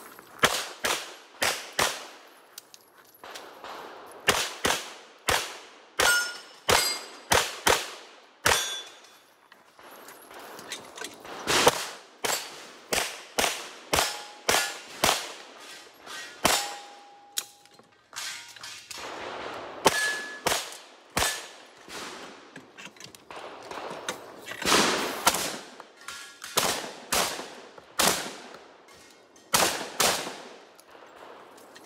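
Rapid strings of pistol shots, and shotgun shots near the end, with steel targets clanging and ringing briefly after hits. The strings break off for a second or two several times as the shooter moves between positions.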